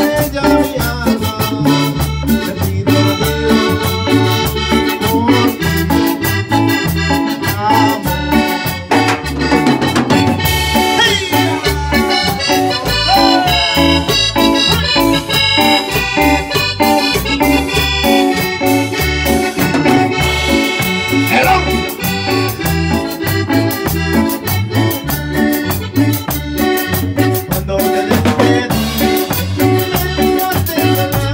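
A Latin dance band playing live: a keyboard melody over a drum kit and a metal güira scraped on every beat, in a steady, even rhythm.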